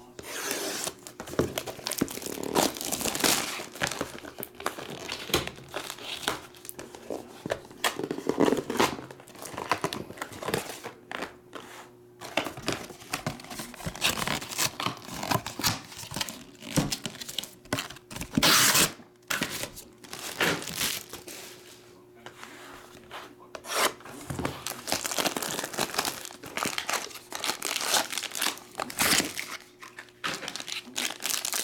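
Trading-card boxes being unpacked by hand: plastic wrap and foil wrappers tearing and crinkling, and cardboard rustling, in irregular bursts.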